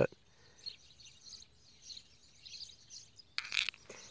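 Faint, scattered chirps of wild birds, with a brief hiss-like burst near the end.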